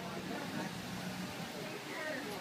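Pickup truck rolling slowly past with its engine running as a low steady hum, under faint background voices.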